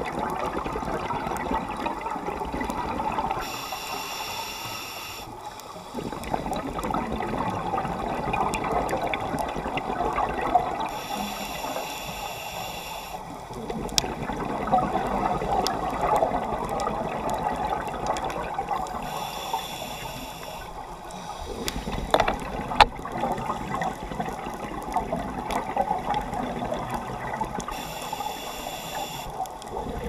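Scuba diver breathing through a regulator underwater: four slow breaths about eight seconds apart, each a hissing inhale followed by a long gurgle of exhaled bubbles. A few sharp clicks stand out, the loudest about two-thirds of the way through.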